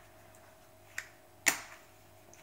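Two sharp plastic clicks about half a second apart, the second louder: the two-speed gear selector slider on top of a Bosch GSB 18V cordless drill being switched between speed one and speed two.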